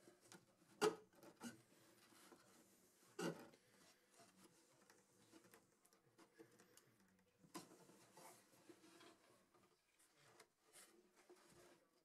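Faint handling sounds of a wooden radio cabinet and its stuck speaker panel being worked loose: light knocks, taps and scrapes of wood, the two sharpest about a second and three seconds in.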